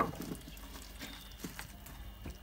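A few faint, soft clicks and taps as raw potato and carrot chunks are pushed around by hand in a metal roasting tray.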